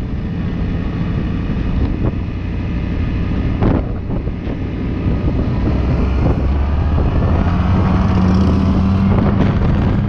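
Motorbike engine running on the move, with wind buffeting the microphone. In the second half the engine note rises and gets a little louder as the bike speeds up.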